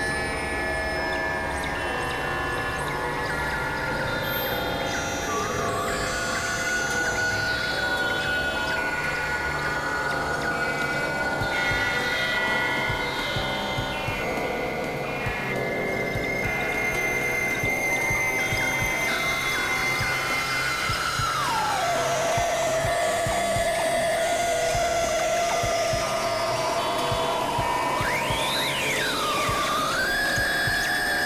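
Dense, layered experimental electronic music: many overlapping short notes falling in stepped runs under sustained high drone tones. About two-thirds through, one drone slides down in pitch and holds lower, and near the end a tone swoops quickly up and back down.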